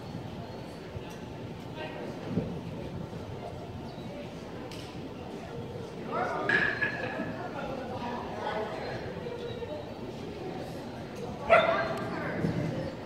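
A dog barking in a large, echoing hall, with people's voices in the background; the loudest bark comes near the end.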